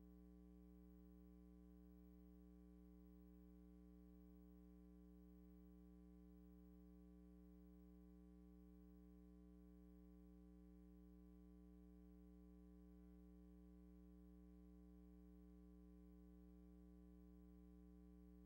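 Near silence with a faint, steady low hum.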